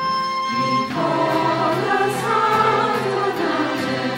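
Mixed church choir singing with instrumental accompaniment. The voices come in about a second in, over a held instrumental note.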